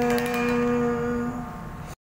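The band's song ending on one long held note, most likely a voice, which scoops up into pitch and is sustained with a brief crash just after the start. The sound then cuts off abruptly just before the end.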